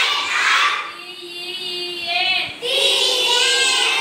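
A group of young children singing together in unison, a song with long held notes, quieter in the middle and louder again near the end.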